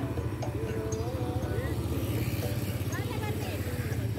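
Busy night-market street ambience: motorbike engines running close by under a steady low rumble, with a crowd's voices and wavering singing or music mixed in.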